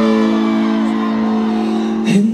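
Live rock band on stage holding one sustained chord, steady and unchanging in pitch, with a brief laugh over it at the start.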